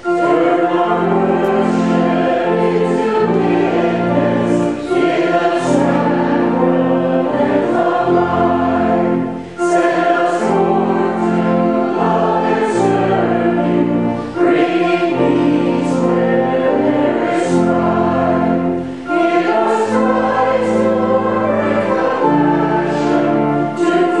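A church congregation sings a hymn together in sustained chords. The phrases are a few seconds long, with a brief break about every five seconds.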